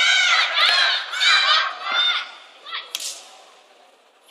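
High-pitched shouts from spectators, a string of short calls rising and falling in pitch, for about the first two seconds. About three seconds in there is a sharp slap, then things go quieter.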